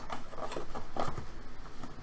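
A small white cardboard box and its lid being handled: a series of light clicks, taps and soft scrapes of card against card.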